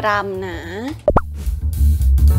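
A woman speaking briefly, then a short rising 'plop' sound effect about a second in, followed by upbeat background music with drums.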